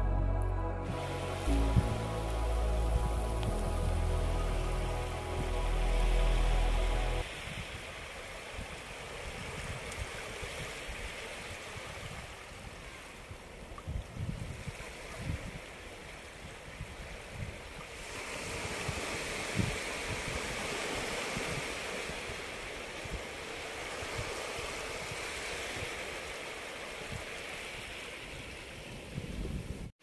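Background music for about the first seven seconds, then it cuts off. After that, small sea waves wash over the shallows, with wind buffeting the microphone in irregular rumbles.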